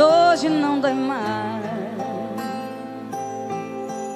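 Live sofrência (romantic sertanejo) song by a band with a female singer. About the first second holds a drawn-out sung note that wavers and bends in pitch, the loudest part, before the band carries on with sustained chords and a bass line.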